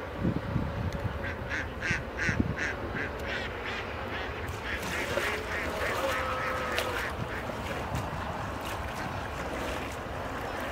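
A bird calling in a quick run of short, evenly spaced calls, about three a second, from about a second and a half in until about seven seconds in. Water splashes beside a wooden boat as a hand sweeps through it, with a few low knocks near the start.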